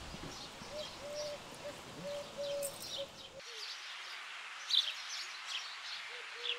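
Small birds chirping in short, scattered calls over a steady background hiss. The low background drops away suddenly about three and a half seconds in, while the chirping goes on.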